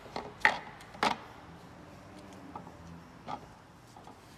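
A few sharp metal knocks and clicks as a camshaft is handled and set down into the bearing journals of an aluminium cylinder head, the loudest about half a second in and another about a second in.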